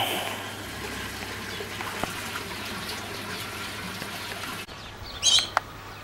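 A steady rushing background noise with no distinct events, which cuts off suddenly near the end, followed by a brief high bird chirp.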